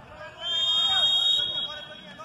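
Referee's whistle blown in one long steady blast of about a second and a half, starting about half a second in: the signal for the penalty kick to be taken.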